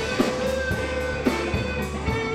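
Live blues band playing with no singing: electric guitars, bass guitar and drum kit. Held lead notes run over regular drum hits.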